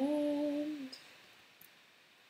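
A woman's voice humming a closed-mouth "hmm" that rises slightly in pitch and ends about a second in, followed by quiet room tone with a faint click or two.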